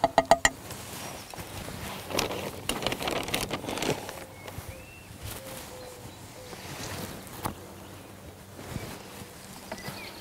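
Hands handling potted plants and compost: a quick run of small clicks at the start, then a couple of seconds of rustling and scuffing, with lighter handling noises after.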